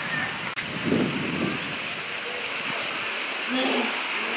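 Steady rush of water pouring from a rock outlet into a pond, broken by an abrupt cut about half a second in, with faint voices of people in the background around one second in and near the end.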